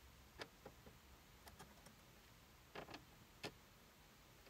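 Faint, scattered clicks and taps of a screwdriver tip against a blown glass cartridge fuse, broken in half, and the metal clips holding it, as the fuse is pushed out of its contacts; the sharpest click comes about three and a half seconds in.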